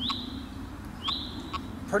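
A bird calling twice, about a second apart, each call a short high whistle that slides up and then holds, over a low steady background hum.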